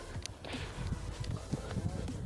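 Low, uneven rumble of wind on a phone microphone, with a few faint clicks.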